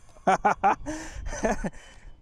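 A man laughing in short, breathy bursts, with a pause about halfway through.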